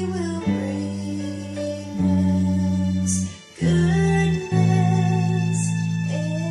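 Electric bass guitar played with the fingers, holding long low notes that change every second or so, with a short break about three and a half seconds in, over a recording of the song with its backing music.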